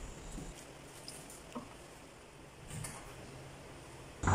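Faint stirring of a liquid curry in a stainless steel pot with a wooden spoon, with a light knock about one and a half seconds in.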